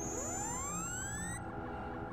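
Electronic sound effect of the briefing hologram: several thin synthetic tones glide upward together for about a second and a half, over a steady low electronic hum.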